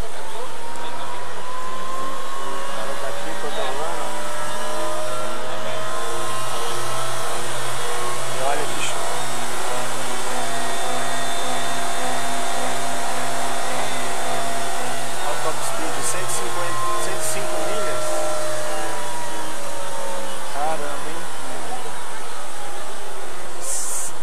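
Traxxas XO-1 electric RC supercar running on a dynamometer: a motor and drivetrain whine that climbs slowly in pitch as the car speeds up, holds near the top for several seconds in the middle, then falls away as it winds down near the end.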